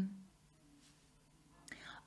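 A pause in a woman's speech: her drawn-out 'um' trails off, then near silence, with a short faint sound, such as a breath, just before she speaks again.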